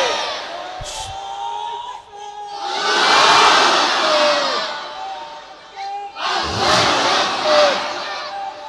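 A large crowd shouting together in unison twice, each shout lasting one and a half to two seconds, in answer to a preacher's rallying cry.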